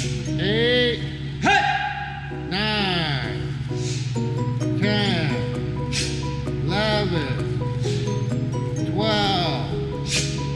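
Background music with steady held tones, and a shouted voice calling out about once a second: the instructor counting the moves of the taekwondo form.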